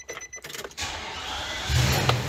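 Keys jangling as the ignition key is turned, then a Nissan NV2500 van's 5.6-litre V8 cranking on the starter and catching near the end into a steady low run. It starts on power from a portable lithium jump starter pack alone, with the van battery's negative unhooked.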